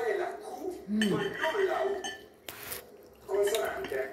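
Cutlery clinking and scraping against a ceramic dinner plate, with a sharp clink about two and a half seconds in, over voices talking at the table.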